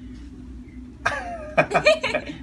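Low room hum for about a second, then a woman's sudden loud exclamation with a sliding pitch, followed by two short, sharp vocal bursts.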